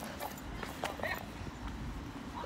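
Scattered footsteps on a paved path, with faint voices in the background.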